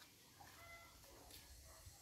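Near silence: faint background with a few brief, faint short tones.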